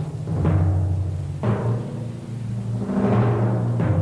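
Dramatic orchestral underscore: repeated timpani strikes over held low notes.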